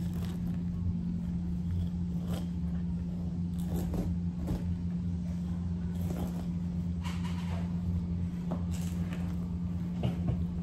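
A steady low hum runs throughout. Over it come a few short scraping and cutting sounds from a Cutco kitchen knife working into the flesh of a halved jackfruit, bunched around the middle and again near the end.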